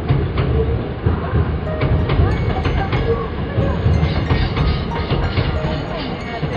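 Hankyu electric train crossing a steel girder bridge: a loud low rumble with repeated clacks from the wheels over the track, with music playing over it.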